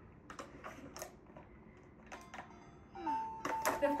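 Light clicks and taps of small plastic toy pieces being handled and set down, then about three seconds in the battery-powered toy fire truck starts playing an electronic tune with a held note.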